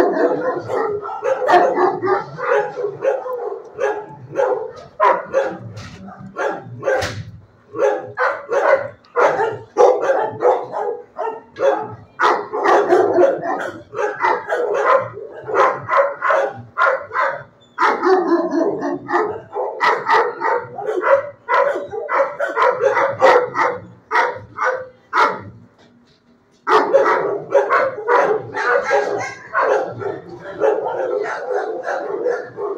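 Shelter dogs barking almost without pause, many barks overlapping one another, with a short lull near the end before the barking starts up again.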